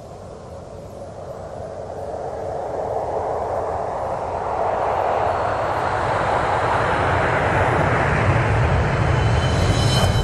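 An intro sound effect: a rushing noise with a low rumble underneath that swells steadily louder and brighter throughout.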